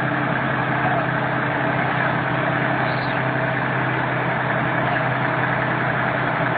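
Heavy diesel engine idling steadily, a constant low hum with no revving.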